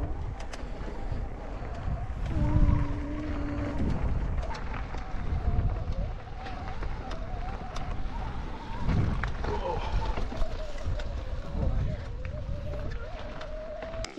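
A mountain bike rolling down a dirt trail: wind buffeting the camera microphone and tyres rumbling over the ground, with heavier bumps about two and a half seconds in and again around nine seconds. A thin wavering tone that rises and falls runs over it almost throughout.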